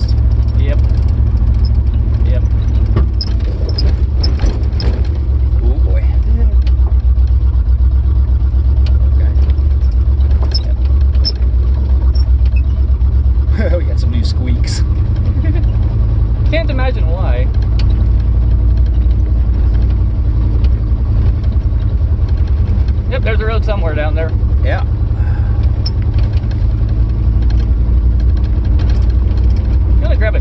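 Loud, steady low rumble of a roofless Lincoln driving on a rough dirt road: engine, tyre and wind noise through the open cabin, with occasional short rattles.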